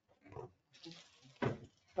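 A brief rustle and faint murmuring, then a single sharp knock about one and a half seconds in.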